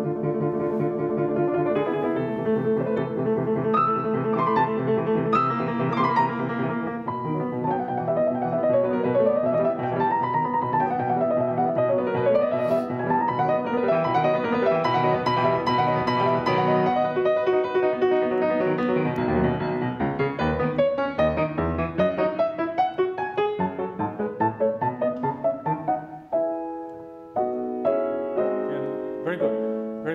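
Steinway grand piano played solo: a dense, continuous classical passage with rippling up-and-down figures, thinning to separate, detached chords over the last few seconds.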